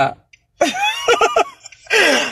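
A woman laughing: a throaty, pitched vocal sound with a quick run of pulses, starting about half a second in, and another short burst near the end.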